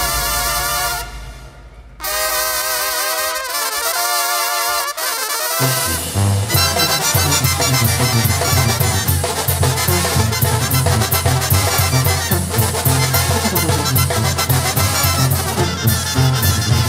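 Instrumental banda sinaloense music with no singing. The brass holds wavering notes that fade briefly, and a new horn phrase starts about two seconds in. Around six seconds in the tuba and full band come in with a steady beat.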